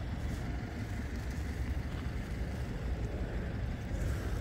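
Low, steady outdoor background rumble with no distinct events.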